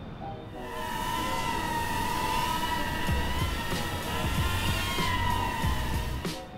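Air Hogs DR1 mini quadcopter's motors and propellers whining steadily in flight, the pitch wavering a little as the throttle and roll stick are worked. It starts about half a second in, over background music.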